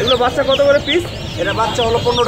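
A cage full of chicken chicks peeping: many short, high, falling peeps, several a second, with people talking underneath.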